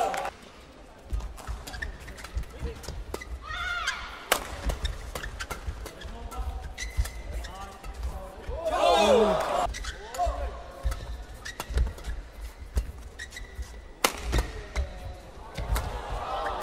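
Badminton doubles rally: sharp, irregular racket strikes on the shuttlecock, with short squeaks of players' shoes on the court mat between them.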